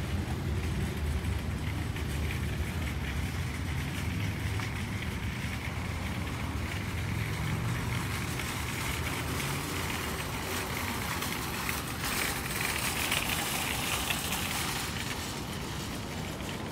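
Steady low rumble of a vehicle engine running nearby, with a rise in hiss about twelve seconds in.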